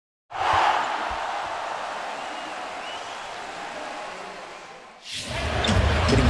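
A sudden rush of noise that starts a moment in and fades slowly over about four seconds. Near the end, basketball game sound from the arena takes over: crowd noise with a ball bouncing on the court and shoe squeaks.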